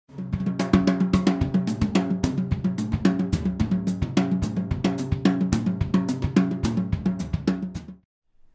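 Yamaha acoustic drum kit played in a busy, steady groove: snare, bass drum and cymbal strokes with ringing drum tones. It stops just at the end.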